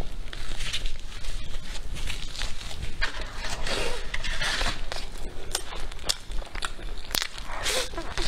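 Close-up eating sounds: a crisp-crusted flatbread torn apart by hand, bitten and chewed, heard as several crackly bursts, the loudest in the middle and near the end.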